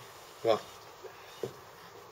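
Faint steady background hum of room noise, broken by one short spoken word about half a second in and a brief soft sound near the end.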